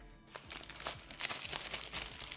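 Paper wrapper crinkling and rustling as it is handled, a dense run of crackles starting about a third of a second in.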